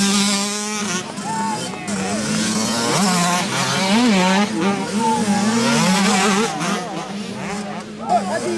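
Several 65cc two-stroke motocross bikes revving through the corners, engine pitch rising and falling again and again as riders roll off and open the throttle.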